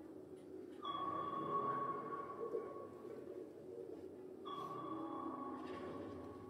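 Simulated active-sonar pings: two pings about four seconds apart, each a sudden bright tone that rings on and slowly fades, over a low steady rumble.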